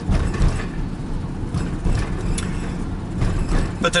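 Low, steady road and engine rumble inside the cabin of a moving work van, with a few faint rattles.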